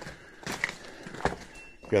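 Footsteps scuffing and crunching on dry, broken rock and debris, with a couple of sharper knocks.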